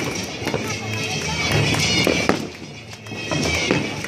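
Fireworks going off in repeated sharp pops and cracks, mixed with music and people's voices.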